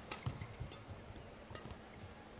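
Faint badminton rally: several sharp clicks of racket strings striking the shuttlecock, scattered among soft thuds of players' footwork on the court.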